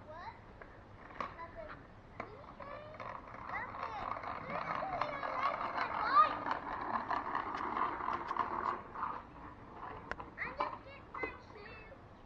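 Child's kick scooter rolling on a concrete driveway. Its wheel noise swells as it comes close around the middle and fades again, with a few small clicks.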